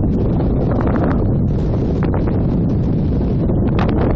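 Strong wind buffeting the phone's microphone ahead of a storm: a loud, steady low rumble with brief crackles.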